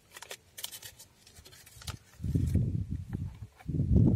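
Light clicks and ticks from a thin plastic tray and packet being tapped and handled over a bucket of water, followed about halfway through by two bursts of low rumble, the loudest sound here.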